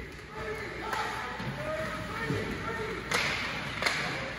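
Ice rink ambience during a hockey game: faint distant voices over a steady arena hum. Two sharp knocks from sticks and puck in play come a little after three seconds in and again just before the end.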